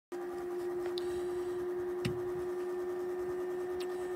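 A steady, unchanging hum at one mid pitch, with a few faint ticks over it.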